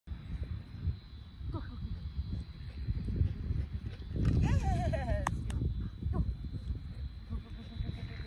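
Wind rumbling on the microphone. Over it come a few short, high-pitched wavering calls, the longest about four seconds in.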